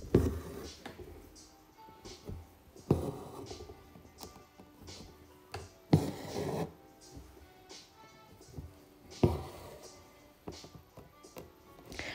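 Soft background music, with embroidery thread being drawn through linen fabric in a hoop: a rasping pull about every three seconds, four in all.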